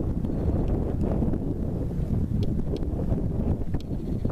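Wind buffeting the microphone: a steady low rumbling noise, with a few faint clicks.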